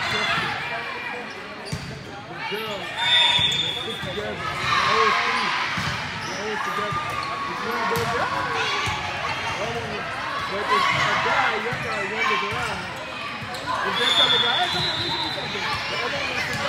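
A volleyball rally in a large indoor gym: ball contacts and thuds on the court, under steady calling and chatter from players and spectators.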